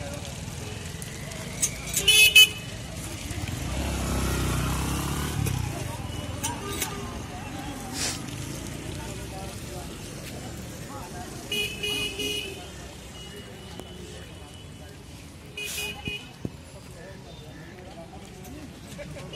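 Street traffic with vehicle horns honking: a loud short double honk about two seconds in, further honks around twelve and sixteen seconds. A vehicle's engine rumble swells past around four to five seconds.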